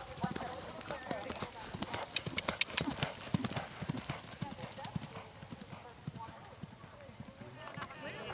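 Hoofbeats of a grey horse cantering on grass as it passes close by, loudest about two to three seconds in, then fading as the horse moves away.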